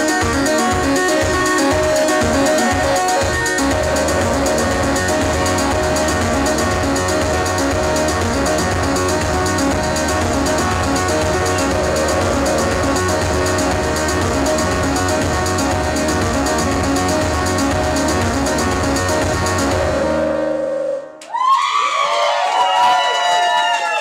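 Live electronic music from laptop and synthesizers: a pulsing beat that drops away after a few seconds into a held bass drone under layered synth tones. The music cuts off suddenly near the end, and a short loud burst of sliding pitches follows.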